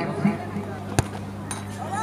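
A football struck hard by a penalty kick: one sharp thump about a second in, over a low steady hum.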